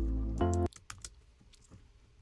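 Song playback of sustained keyboard chords over a deep bass that cuts off abruptly just under a second in, as playback is stopped. It is followed by several light, separate computer-keyboard clicks.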